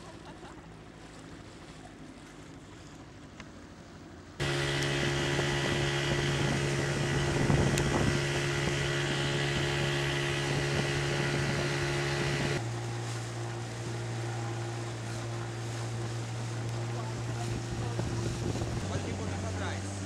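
A small boat's outboard motor running at a steady pitch over wind and water noise. It comes in much louder about four seconds in, and its note drops a step twice later on.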